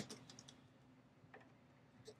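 Near silence with a few faint, small clicks of a hobby knife and hands handling the guitar body, a sharper one at the very start.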